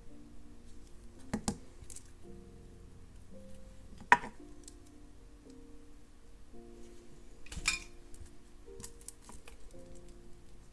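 Small metallic clicks from jewelry pliers and gunmetal wire findings as a wire loop is opened, hooked onto a jump ring and closed: one click about a second in, a sharper single click about four seconds in, and a short run of clicks past seven seconds. Soft background music with held notes plays throughout.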